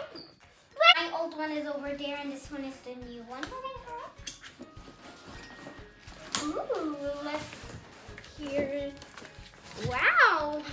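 A young child's voice singing drawn-out, wordless notes that slide up and down in pitch, in three phrases with pauses between.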